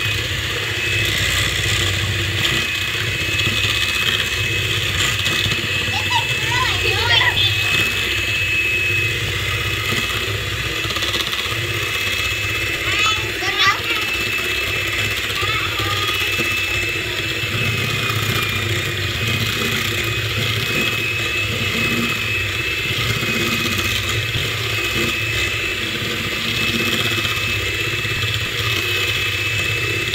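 Corded electric hand mixer running steadily on its lowest speed with a steady high whine, its twin beaters whipping heavy cream and cocoa in a stainless steel bowl.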